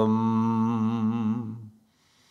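A man's voice holding a steady hummed 'mmm' on one pitch, the closing nasal of a chanted Sanskrit mantra syllable, which fades and stops about one and a half seconds in.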